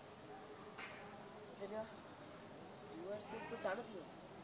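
Faint, quiet speech from a boy, in short broken phrases with pauses between.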